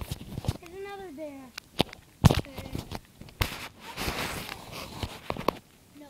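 A child's voice making a drawn-out, wavering vocal sound near the start, then a series of sharp knocks and bumps, the loudest a little over two seconds in, with a short rustle about four seconds in.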